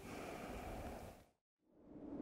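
Faint background noise that fades out into a brief dead silence a little past the middle, then faint noise returning near the end.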